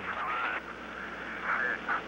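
Narrow-band, hissy radio channel of the NASA launch loop, with brief fragments of a radioed voice, the loudest near the end.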